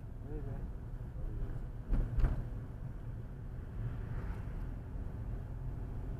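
Steady low rumble of a car's engine and tyres on the road, heard from inside the moving car. About two seconds in come two sharp knocks in quick succession, the loudest sound, and a faint voice is heard briefly near the start.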